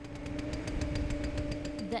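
Engine of heavy construction equipment running steadily at a trench worksite: a constant hum over a low rumble, with rapid even ticking of about fifteen a second.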